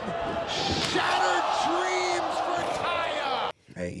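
Wrestling match audio: arena crowd noise with a voice over it and the slam of a body hitting the ring. It cuts off suddenly about three and a half seconds in.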